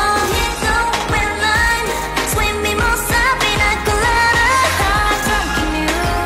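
K-pop song with female group vocals singing over a steady beat, processed as 8D audio so the sound pans around the listener.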